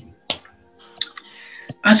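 A few short, sharp clicks in a pause between speech, with a soft hiss between them, before the voice resumes near the end.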